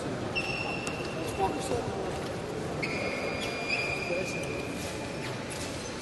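Electronic fencing scoring-machine tone: a steady high beep, heard once for about a second and a half and again for nearly three seconds, over a murmur of voices and scattered clicks in a large echoing sports hall.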